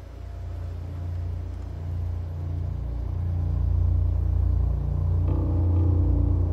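A deep, low rumble that swells steadily louder, with a higher hum joining in about five seconds in.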